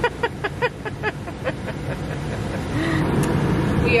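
A woman laughing in short bursts over a car's steady low running rumble, then a scratchy scrape about three seconds in as an ice scraper is drawn across the frosted windscreen.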